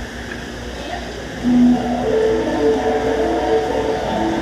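Ukulele played through an effects pedal chain: after a moment of low hum, a held low note comes in about a second and a half in, followed by long, sustained melodic notes.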